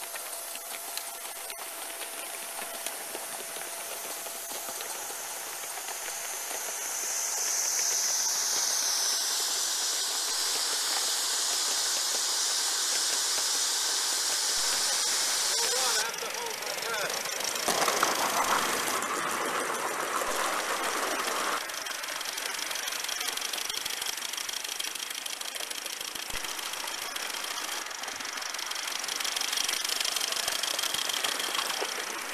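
Gauge 1 live-steam model locomotives running, with a steady hiss of steam. A louder passage of running noise comes a little past halfway.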